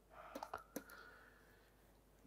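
Near silence with three faint, short clicks in the first second: a stylus tapping on a writing tablet as an equals sign is written.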